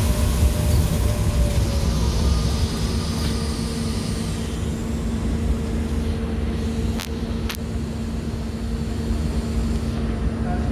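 Monorail running noise heard from inside the car: a steady hum over a low rumble. The higher hiss dies away about halfway through as the train comes alongside the station platform. Two sharp clicks come about two-thirds of the way in.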